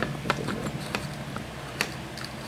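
Power supply circuit board being slid into its mounting groove in the case: a run of small, irregular clicks and scrapes, with one sharper click near the end.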